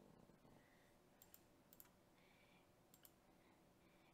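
Near silence with a few faint computer mouse clicks, mostly in quick pairs, about a second apart.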